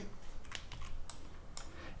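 A few light keystrokes on a computer keyboard: short, faint key clicks spread through a quiet pause.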